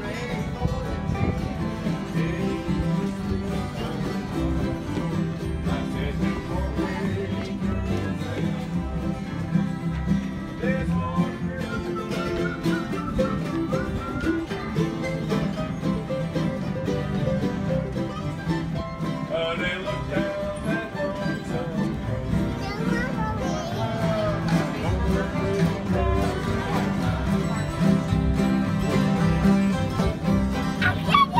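Live bluegrass jam: acoustic guitars and other string instruments playing a steady, strummed tune together.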